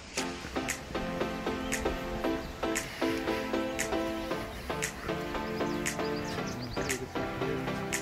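Background music with a steady beat, about one beat a second.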